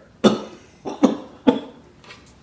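A man coughing three times in quick succession.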